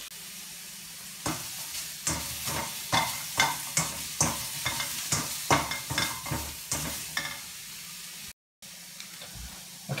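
Chicken pieces sizzling in a stainless steel wok over a gas flame, with a spatula scraping and tapping against the pan in quick irregular strokes for several seconds. The sound breaks off briefly near the end.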